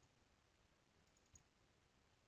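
Near silence, with a single faint computer-mouse click about halfway through.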